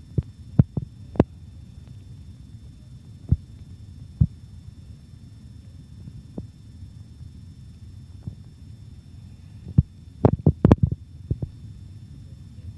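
Steady low hum with a faint high-pitched whine above it, broken now and then by short low thumps and a quick run of them near the end.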